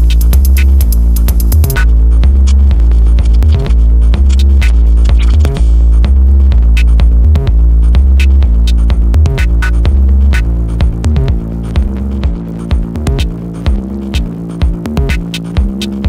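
Old-school analog techno track with a heavy, droning bassline under sharp, evenly spaced percussion hits. A fast high ticking stops just before two seconds in. About ten seconds in, the sustained bass breaks into choppy pulses and the track drops a little in loudness.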